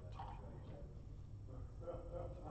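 Faint clicks of backgammon checkers being picked up and set down on the board, over a low room hum and faint murmured voices.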